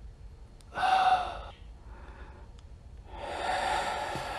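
A man's short, loud vocal exclamation about a second in, then a longer breathy sigh building from about three seconds in.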